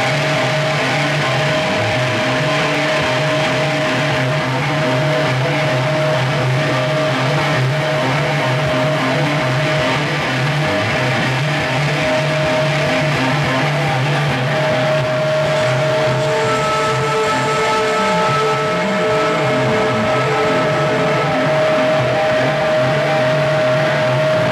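Amplified electric guitars from a live rock band holding a loud, droning passage with no drums: sustained notes over a low hum, with further high held tones joining about two-thirds of the way in.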